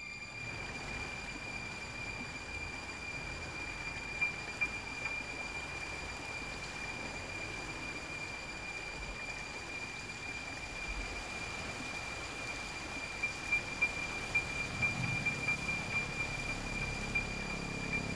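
A steady hiss with a thin, high, whistle-like tone held throughout. A few soft ticks come about four seconds in, and more scattered ticks follow in the last few seconds.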